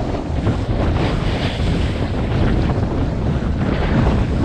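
Wind rushing over the microphone at skiing speed, a loud, steady rumble, over the hiss and scrape of skis carving down groomed snow.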